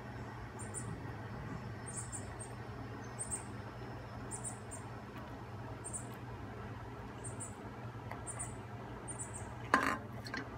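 High-pitched chirps from a small creature, coming in quick twos and threes about once a second over a steady low hum, with one short, loud noise near the end.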